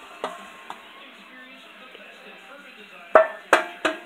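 Handling noise close to the phone's microphone: four sharp knocks in quick succession near the end, each with a brief ring, over low steady background noise.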